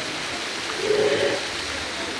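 Steady outdoor hiss like rushing water or wind noise, even and unbroken.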